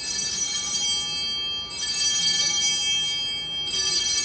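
Altar bells, a cluster of small bells, rung in three shakes about two seconds apart, each leaving a bright, lingering ring. They mark the elevation of the chalice at the consecration.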